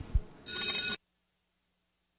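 A low thump, then a bright electronic ringing tone lasting about half a second, cut off abruptly, after which the sound drops out to dead silence.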